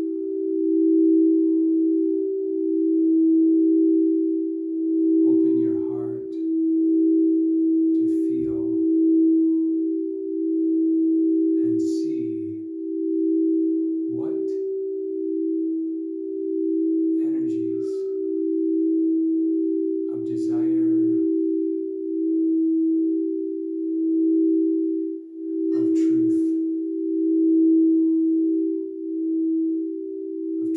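Two crystal singing bowls rubbed with mallets, one of them the G-note throat chakra bowl tuned to 432 Hz. They sustain two steady, close tones that swell and fade in turn every couple of seconds.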